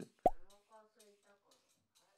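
A single short pop with a quickly falling pitch about a quarter of a second in, followed by faint, quiet murmured voice that fades out.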